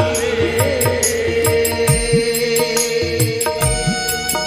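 Devotional bhajan music without words: a harmonium-like held note over hand-drum strokes whose bass bends in pitch, with a steady beat of sharp high strikes such as cymbals or clapping.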